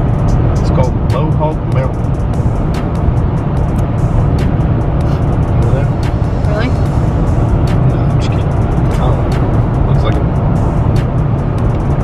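Loud, steady road noise of a car at highway speed, heard from inside the cabin, with a deep rumble and scattered small clicks. A voice is partly buried under it.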